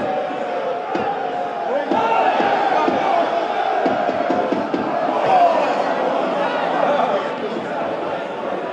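Football stadium crowd: a steady mass of many voices shouting and singing together.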